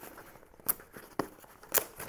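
Fingers picking at and tearing the tape seal on a small cardboard box, with three short sharp crackles of tape and cardboard.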